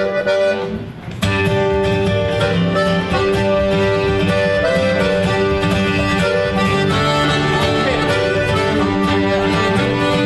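A button accordion and an acoustic guitar strike up a bluegrass song about a second in, playing together at a steady tempo. A fiddle joins near the end.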